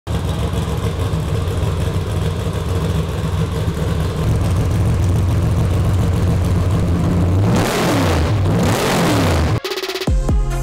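Race truck engine running steadily as the Brenthel trophy truck rolls in, then revved up and down a couple of times near the end before the sound cuts off suddenly.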